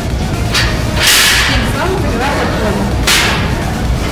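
Electronic background music with a steady bed, cut by three loud, hissing swish sweeps: one about half a second in, a longer one around a second in, and one about three seconds in.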